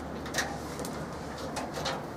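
Sloth bear's claws clicking and scraping on a metal cage: a handful of short, sharp clicks spread over the two seconds, over a steady low hum.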